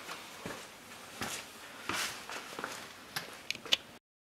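Faint scattered clicks and rustles, about half a dozen, like someone moving about and handling things at the work area, with a sharper click near the end.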